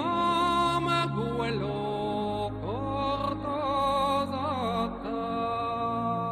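Slow background music: a wordless melody whose notes slide up into long held tones, wavering briefly near the end, over a low sustained drone.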